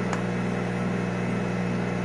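Steady low hum of running equipment, with one faint click just after the start.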